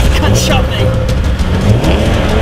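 A man groaning in pain over a car engine running and revving.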